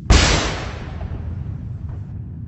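A single pistol gunshot sound effect fires about a tenth of a second in and dies away over about half a second, over a steady low rumble.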